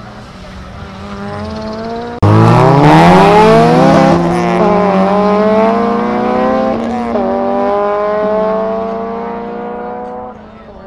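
A track car's engine accelerating hard from a launch. It comes in loud and sudden about two seconds in, and its pitch climbs through the gears, dropping back at upshifts about four and seven seconds in. It fades as the car pulls away down the track.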